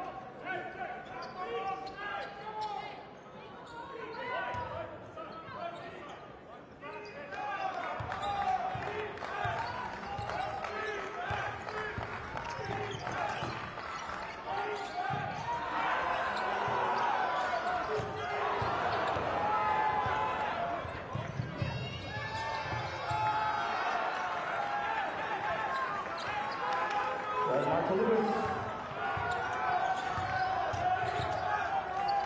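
Basketball bouncing on a hardwood court during live play, with the voices of players and spectators in the arena.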